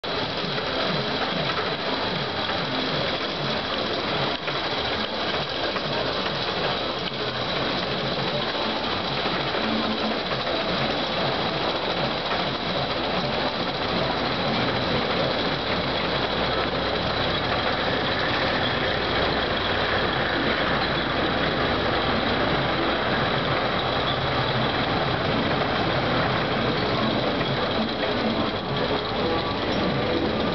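Steel roller coaster running: its cars make a continuous mechanical clatter on the track.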